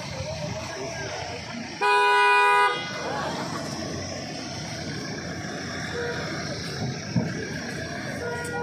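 A vehicle horn sounds once, a single steady honk just under a second long, about two seconds in, over outdoor background murmur.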